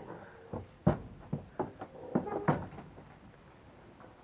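A horse's hooves knocking on a trailer loading ramp as it steps down off it: about six hollow knocks in the first two and a half seconds, stopping once it is on the grass.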